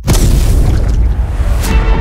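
A deep cinematic boom hits suddenly at the start over trailer music, with a second hit about 1.7 seconds in as a held chord comes in.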